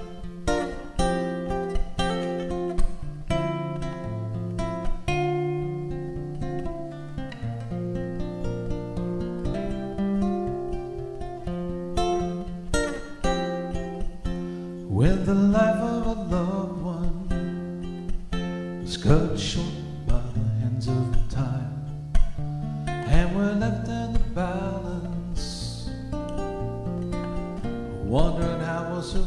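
Live band playing an instrumental song introduction: strummed acoustic guitar over electric bass, with a soprano saxophone melody entering about halfway through.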